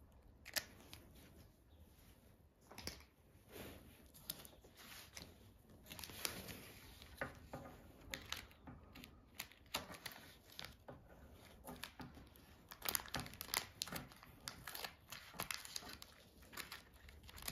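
Scissors snipping through a book-covering sheet, with the paper rustling and crinkling as it is handled: irregular sharp snips and rustles throughout, busiest and loudest near the end.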